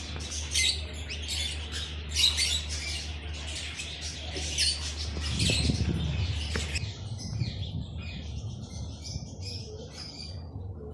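Many birds chirping and squawking in quick, overlapping calls, busiest for the first seven seconds and then sparser. A steady low hum runs underneath.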